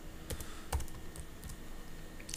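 A few separate keystrokes on a computer keyboard, two of them louder, about a third and three quarters of a second in.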